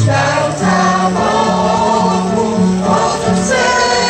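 A choir of older women and men singing a Polish soldiers' song to electronic keyboard accompaniment, with held notes over a steady bass line.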